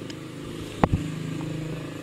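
An engine running steadily at an even pitch, with one sharp knock a little under a second in.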